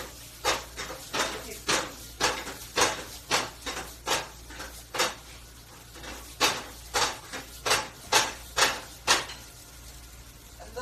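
A series of about sixteen sharp strikes, roughly two a second and a little uneven, with a gap of over a second near the middle.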